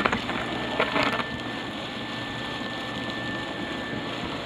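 Cellulose insulation blower running steadily, air and fibre rushing through the hose, with a thin steady high whine over it. A couple of brief louder rustles come in the first second or so.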